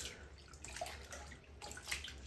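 Faint sloshing and small splashes of a hand swishing doll clothes through soapy water in a plastic tub, a slightly louder splash near the end.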